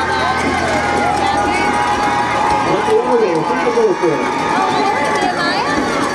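Players and spectators on a youth football sideline shouting and cheering during a play, many voices overlapping, with one long held call through the first few seconds.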